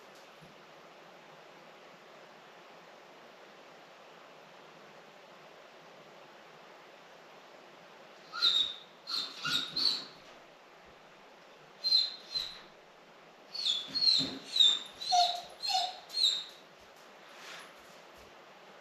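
Dog whining and yelping in short high-pitched cries, in three bursts starting about halfway through: a few cries, two more, then a quicker run of about six. These are the cries of a dog left alone in the house for the first time and finding it hard.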